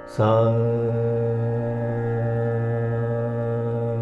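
A man singing the Carnatic note 'sa' as a long held tone, starting sharply just after the beginning and sustained at one steady pitch, over a continuous drone.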